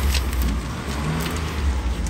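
A low, steady rumble, with a faint short hum about a second in.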